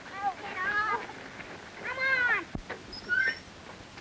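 Children yelling in a scuffle: three or four drawn-out cries that rise and fall in pitch, with a thump about two and a half seconds in.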